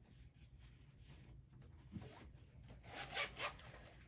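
Faint off-camera handling of pens and their cases, with a run of short rasping strokes starting about three seconds in, over a low steady room hum.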